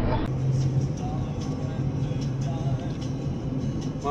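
Steady low drone of a car's engine and road noise heard inside the cabin while driving, with faint voices in the background.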